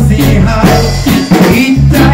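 A live band playing loud: electric guitars and drum kit over deep low notes, with a male voice singing in the second half.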